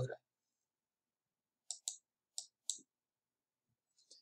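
Four short computer mouse clicks close together a little before the middle, otherwise near silence.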